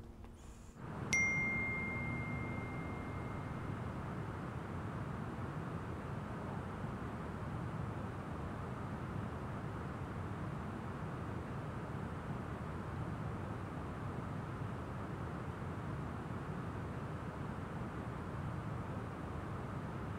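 A single bright phone message-notification ding about a second in, ringing out over a few seconds, followed by a steady low rush of outdoor wind and distant traffic noise.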